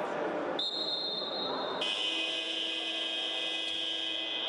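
A long, steady electronic buzzer tone that starts about half a second in and shifts to a different, fuller tone a little over a second later.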